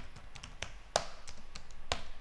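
Computer keyboard keys being typed: a run of irregularly spaced clicks, with two louder keystrokes about a second in and near the end.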